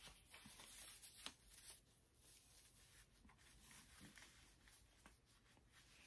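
Near silence with faint rustling of a curly synthetic lace front wig being pulled onto the head over a stocking cap, a few soft brushing sounds in the first two seconds, then quieter.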